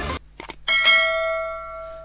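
Music cuts off, then two quick clicks and a single bell ding that rings on and slowly fades: the click-and-notification-bell sound effect of a YouTube subscribe-button animation.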